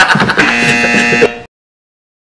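A man laughing loudly, then a steady buzzer sound effect laid over the laugh that holds for under a second before all sound cuts off abruptly.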